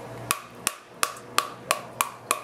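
Wooden spoon beating the rind of a halved pomegranate held cut side down in the palm, knocking the seeds loose into the bowl: a steady series of sharp knocks, about three a second.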